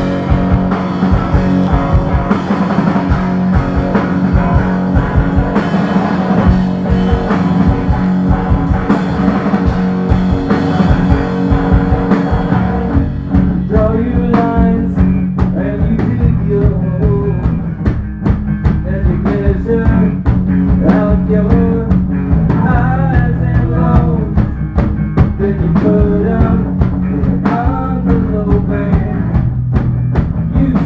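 Live rock band playing loud, with electric guitar and a drum kit with cymbals. About 13 seconds in the dense wall of sound thins out, and a voice sings over the guitar and drums.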